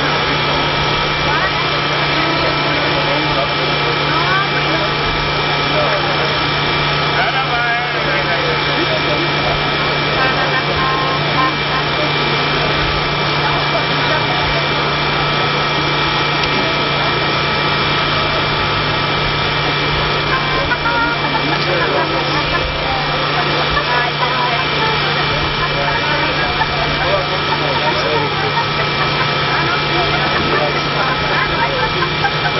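Indistinct crowd chatter, many voices blended with none standing out, over a steady droning hum that holds the same pitch throughout.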